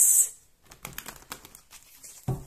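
A deck of tarot cards shuffled by hand: a brief swish at the start, then a run of light, irregular clicks and taps as the cards knock together and the deck is squared.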